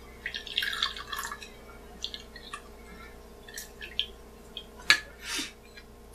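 Fresh lime juice dripping and trickling from a hand-held citrus squeezer into a small glass measuring cup. It is broken by a few sharp clicks, the loudest about five seconds in.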